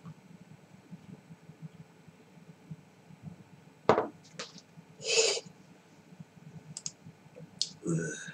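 A beer glass set down on the table with one sharp knock, followed about a second later by a short breathy exhale, over a low steady room hum with a few faint clicks near the end.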